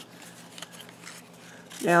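Faint paper rustling as a cardstock tag is slid down into a folded paper pocket, with a woman's voice coming in near the end.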